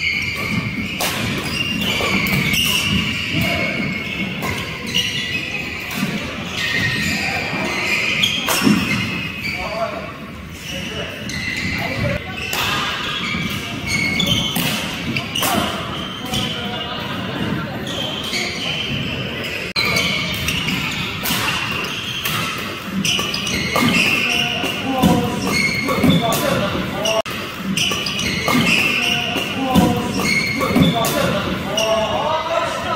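Indoor doubles badminton rally: repeated sharp racket strikes on the shuttlecock and players' footsteps on the court, echoing in a large hall.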